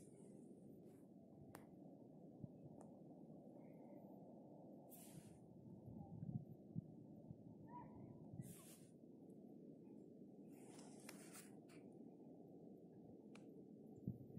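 Near silence: a faint steady low rumble of outdoor background, broken by a few brief soft rustles and light thumps.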